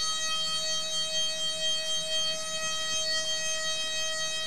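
DATRON high-speed milling spindle running at 38,000 RPM with a chip-breaking roughing end mill cutting full depth through a metal block in a dynamic, small-step-over cut. It gives a steady high-pitched whine with a row of overtones above it.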